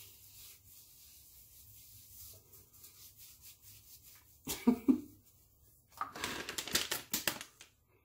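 Soft rustling of a plastic pack of facial wipes and a wipe being handled, with a brief hummed voice about halfway and a louder burst of rustling near the end.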